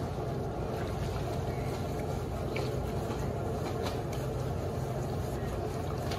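Wet, soapy fabric being rubbed and squeezed by hand in a sink, with a few faint squishes, over a steady low rumble.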